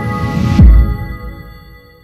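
Logo intro music sting: a held chord with a swelling hiss that lands on a deep, falling boom about half a second in. The chord then rings out and fades away.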